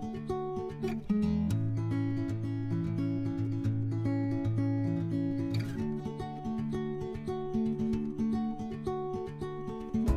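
Background music led by acoustic guitar, with a lower bass line joining about a second and a half in.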